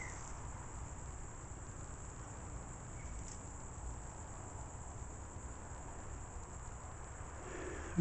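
Crickets chirring steadily, a thin high drone, over a faint low rumble.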